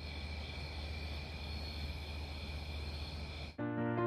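A steady background hiss and low hum with a few thin, unchanging high tones, then slow, soft music with held notes starts suddenly near the end.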